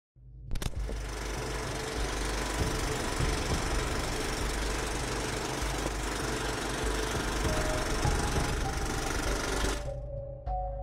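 Film projector clatter running steadily as a sound effect, starting with a click about half a second in and cutting off suddenly just before the end, with a few faint held musical notes over it.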